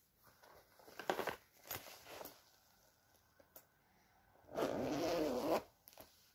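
Zipper on a fabric makeup bag pulled in one long rasp of about a second, near the end, the loudest sound. Before it come shorter rustles of the bag being handled, about one and two seconds in.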